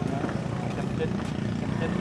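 A steady low engine drone runs throughout, with faint talk over it.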